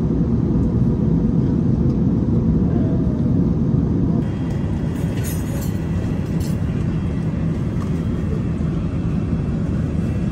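Steady low rumble of an Airbus A380 cabin in cruise, from engine and airflow noise. About four seconds in, it dips slightly in level, with a few faint light clicks soon after.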